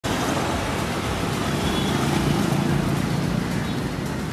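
Steady road traffic noise from a busy street.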